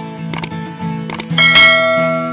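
Outro music with sharp click sound effects, then a bright bell chime about one and a half seconds in that rings on and fades.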